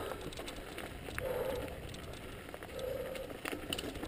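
Mountain bike rolling over a dirt and rock trail: tyre crunch on the ground with scattered small knocks and rattles from the bike over the rough surface.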